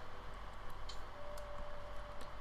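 Faint ticks of a stylus tapping on a tablet screen while writing out a chemical equation, over a low steady hum. A faint steady tone comes in about halfway.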